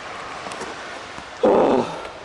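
A man's short grunt, falling in pitch, about a second and a half in, over a steady background hiss.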